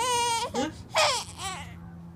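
A young infant crying: a loud high-pitched cry at the start, a second about a second in, then trailing off into softer fussing.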